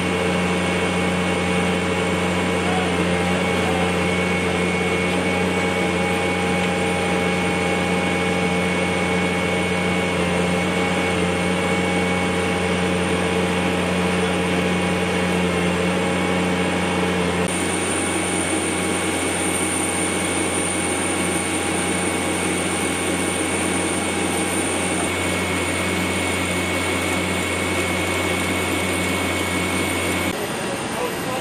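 Steady drone of flight-line machinery at a parked cargo aircraft: a low hum with a thin high whine. Its mix of tones shifts slightly about two-thirds of the way through and again near the end.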